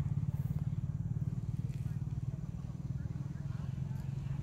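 A small engine running steadily, a low even drone with no change in speed.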